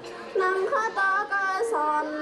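A young woman sings a Thái folk song solo in a high voice. She holds short notes and steps between pitches. After a brief breath she comes back in about a third of a second in.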